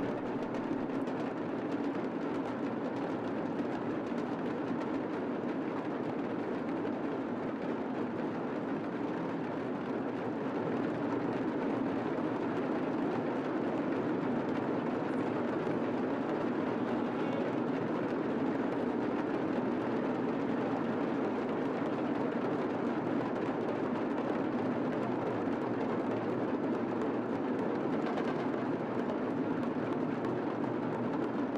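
Massed drums playing a continuous roll, a steady dense din with no separate beats standing out; it swells slightly about ten seconds in.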